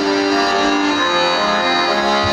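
Accordion playing slow, held chords, the notes changing every half second or so.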